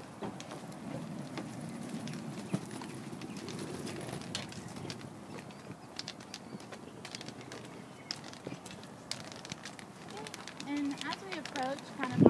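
Footsteps on asphalt with the tip of a long white cane tapping and scraping the pavement as it sweeps: a scatter of short, irregular clicks. A voice starts up near the end.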